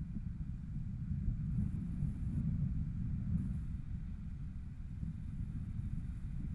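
Wind buffeting an action camera's microphone during a tandem paraglider flight: a steady, unsteady low rumble.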